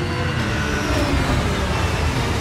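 Film sound effects: a deep, steady rumble of a massive vessel moving through the sea, with rushing, churning water.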